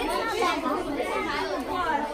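Many children talking and exclaiming at once: a steady din of overlapping excited chatter.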